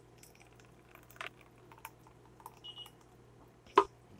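Faint scattered clicks and taps of a glass blender jar against a plastic measuring pitcher as thick blended dressing is poured out, with a sharper knock near the end. A faint steady low hum runs underneath.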